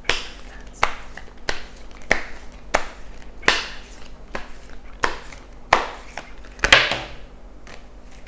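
A tarot deck being shuffled by hand: a steady run of crisp card slaps, about three every two seconds, some with a short papery rustle. The loudest, longest rustle comes near the end, and the shuffling then stops about a second before the end.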